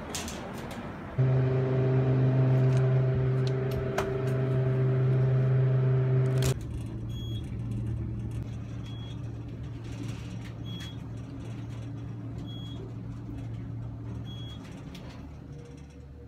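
A loud steady mechanical hum holding several fixed pitches for about five seconds, then cuts off abruptly. It is followed by the quieter low hum of a lift car going up, with a short high beep about every two seconds as it passes floors.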